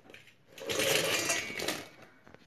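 Fried potato cubes pushed off a plastic plate with a metal spoon, tumbling and clattering into a stainless steel bowl. The clatter starts about half a second in and lasts just over a second.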